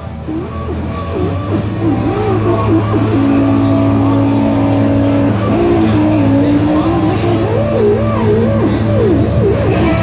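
One oscillator of a Metasonix S-1000 vacuum-tube synthesizer sounding a single pitched tone whose pitch slides and wobbles as its knobs are turned, holding steady for about two seconds near the middle and wobbling up and down again near the end, over a steady low drone.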